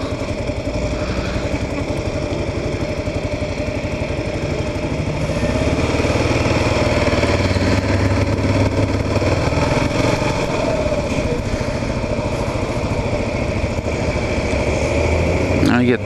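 Kawasaki KLR 650 single-cylinder motorcycle engine running as the bike pulls away from a stop and moves off through an intersection. It gets louder about five seconds in as the bike picks up speed.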